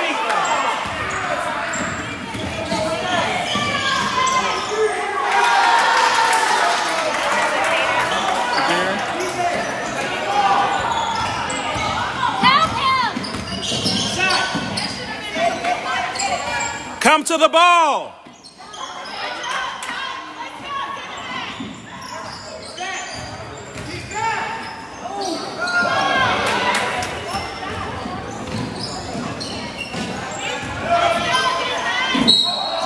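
Basketball dribbling on a hardwood gym floor during play, with voices of players and spectators in the background and the echo of a large hall. A brief, loud squeak with gliding pitch sounds a little past the middle.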